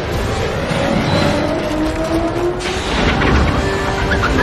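Film soundtrack: dramatic music over the heavy low rumble of a giant wheeled mobile town's huge wheels rolling over the ground, the rumble heaviest about three seconds in.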